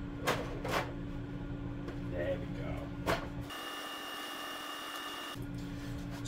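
A few light clicks and knocks of 3D-printed plastic fuselage parts being handled, over a steady low hum. About midway a steady, high-pitched tone holds for a couple of seconds while the hum drops away.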